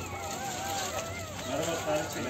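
Several newborn puppies whining in high, overlapping cries that rise and fall.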